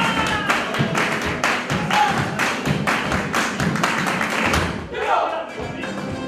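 Carnival comparsa music: a group clapping hands in a steady rhythm, about three claps a second, over strummed Spanish guitars and a bass drum.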